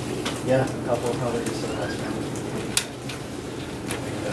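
Low murmured voices and paper handling in a meeting room, with a sharp tap a little under three seconds in.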